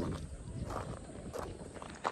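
Footsteps on a gravel trail, a run of short, evenly spaced steps.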